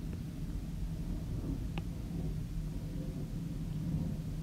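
Steady low background rumble of room noise, with one faint click a little before the middle.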